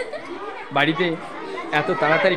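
Children's voices chattering over a meal, several talking at once, with louder bursts of speech about three quarters of a second in and near the end.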